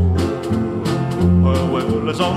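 Country song playing: a short instrumental passage of guitar over a bass line between sung lines.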